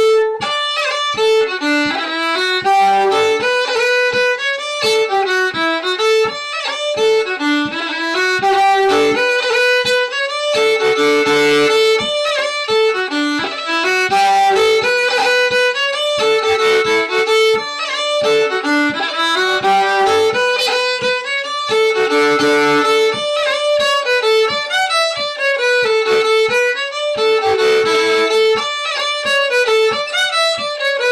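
Fiddle playing a quick tune in D at tempo, an unbroken run of bowed notes in repeating phrases.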